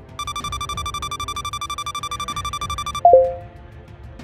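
Electronic countdown-timer alarm: a steady high beeping tone, pulsing rapidly, runs for nearly three seconds as the timer runs out. At about three seconds it gives way to a single louder, lower electronic note marking time up, over quiet background music.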